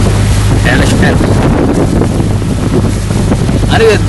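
Wind buffeting the microphone, a loud, rough noise over a steady low hum, with a man's voice showing faintly about a second in.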